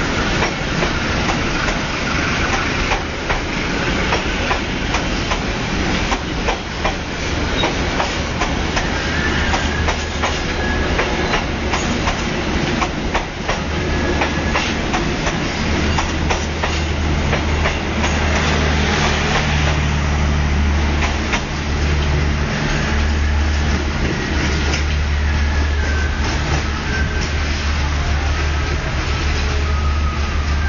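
Taksaka express passenger coaches rolling past at close range as the train pulls out, wheels clattering over the rail joints with many irregular clicks. A low drone grows stronger in the second half as the last cars go by.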